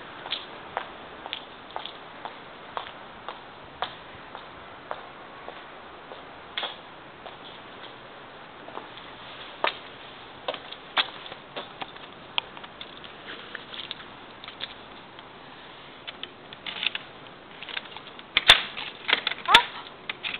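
Scattered light clicks and knocks over a steady hiss, with a louder cluster of knocks near the end: the handling noise of a door being opened and passed through.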